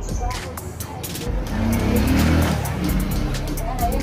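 A motor vehicle passing by: its engine sound swells to a peak about two seconds in and then fades.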